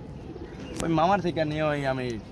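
A man speaking, with domestic pigeons cooing faintly from the cages behind him.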